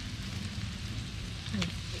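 Seafood sizzling steadily on a charcoal grill over glowing coals, with a few faint crackles.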